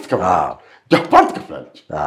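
A man laughing in three short bursts of voice, recorded close on a lapel microphone.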